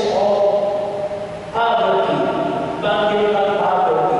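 A man singing into a hand microphone: slow, chant-like held notes, with a short break about a second and a half in and a change of note near three seconds.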